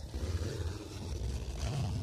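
A tent door zipper being drawn closed by its cord pull: a soft, continuous rasp of the slider running along the coil, over a low rumble of handling noise.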